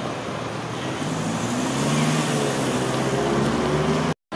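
A motor vehicle's engine running close by on a city street. It comes up about a second in, and its note rises gently as it pulls away, over steady traffic noise.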